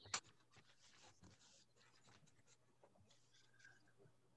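Near silence: faint room tone on a video call, with one brief faint noise just after the start.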